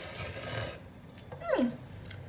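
A breathy rush of air lasting under a second, then a short wordless vocal sound that glides down in pitch.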